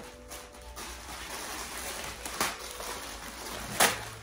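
Plastic packaging rustling and crinkling as it is handled, with two sharp crackles, the louder one near the end.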